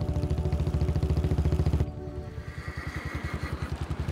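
Motorcycle engine running along at a steady pace, its exhaust a regular low pulse. Background music plays over it until about two seconds in, then drops away, leaving the engine a little quieter.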